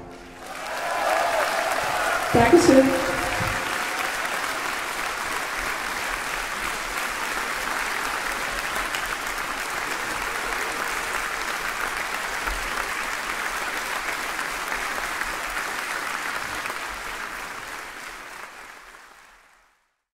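Concert audience applauding steadily, with a brief voice calling out about two seconds in; the applause fades away near the end.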